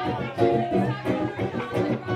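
Live band music: a strummed acoustic guitar and a bass guitar playing with a voice singing.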